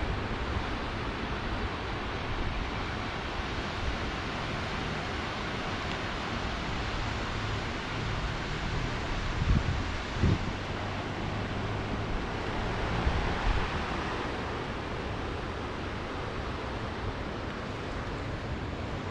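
Steady wind on the microphone over the continuous wash of sea surf on a rocky shore, with a couple of short low thumps about halfway through.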